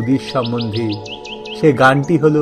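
A bird chirping a quick run of high, rising chirps in the first second, over background music with a steady drone. A man's voice is also heard.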